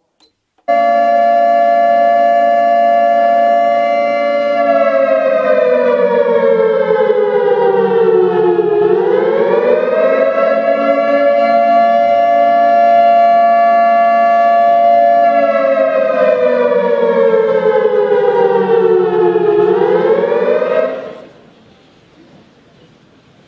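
Electronic alarm siren from a building's alarm/PA system, set off from a wall control panel. It holds one steady pitch for about four seconds, slides slowly down and quickly back up, holds again, then slides down and up once more before cutting off about a second before the end.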